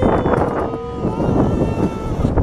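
Wind buffeting the microphone on a moving Ferris wheel. Over it come two long, steady high-pitched tones one after the other, the second higher than the first.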